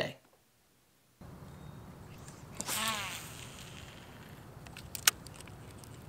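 Steady low outdoor rumble of open air on a lake, starting suddenly after a second of silence. A short wavering pitched call is heard a couple of seconds in, and a couple of sharp clicks come near the end.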